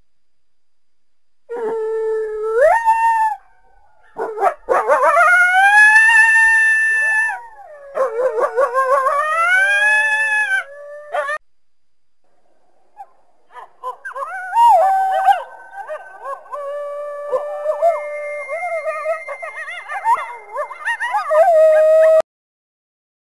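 Coyote howling: a few long howls that rise and fall in pitch, with short pauses between them. After a quiet gap past the middle, several coyotes join in a wavering chorus of overlapping howls.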